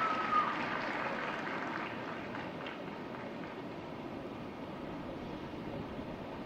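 Spectator applause that fades over the first couple of seconds into a steady background hush of the crowd.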